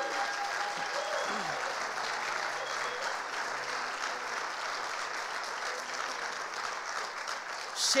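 A congregation applauding, a steady patter of clapping that eases off slightly toward the end. A voice is briefly heard over it in the first second or so.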